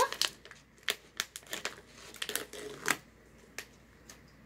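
Clear plastic snack bag of popcorn being pulled open by hand, crinkling in short sharp crackles for about three seconds.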